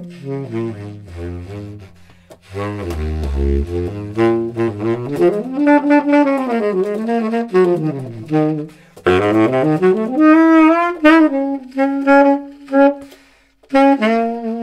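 Conn 12M baritone saxophone played solo and unaccompanied: a jazz line of connected phrases that slide up and down, dipping to deep low notes about three seconds in. There are short breaks between phrases, about two seconds in, near nine seconds and just before the end.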